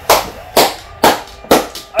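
A slow, even run of hand claps, about two a second.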